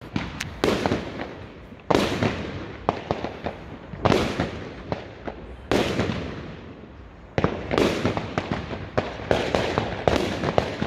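Aerial fireworks bursting: loud bangs about every one to two seconds, each fading away slowly, with smaller pops and crackles in between and a quick run of bangs near the end.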